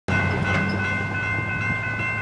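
Diesel locomotive horn sounding one long, steady chord as a freight train approaches a grade crossing, over a low engine rumble.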